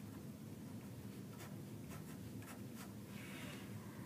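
Pen writing on paper: a few short scratchy strokes, then a longer scratch near the end, faint, over a low steady hum.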